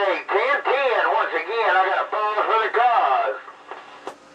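A man talking over CB radio, heard through the radio's speaker with a thin, tinny sound. His talk stops a little after three seconds, leaving faint hiss.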